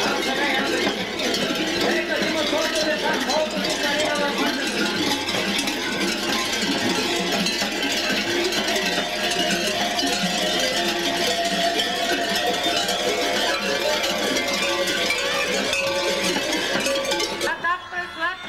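Many large bells worn on the mummers' fur costumes, clanging together in a dense, continuous jangle as the dancers move. The ringing is meant to drive away evil spirits. It cuts off abruptly near the end.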